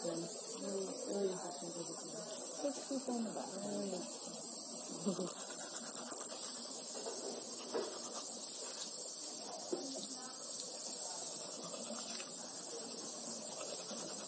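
Low, indistinct talking in the first half. About six seconds in, a steady high hiss starts abruptly and runs on under occasional faint voices.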